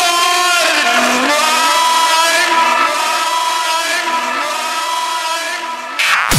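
Breakdown in a frenchcore DJ mix: the kick drum and bass drop out, leaving a loud pitched sound that slides up and down in pitch, getting a little quieter towards the end.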